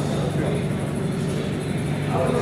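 A steady low rumble with faint, muffled voices over it.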